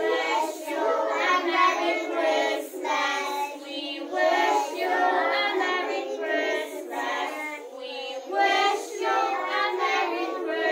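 A group of young children singing a song together, their voices filling the room throughout.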